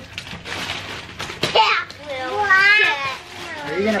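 Rustling and scraping of a cardboard toy box and wrapping paper being handled, with a sharp click about a second and a half in. A child's high voice follows.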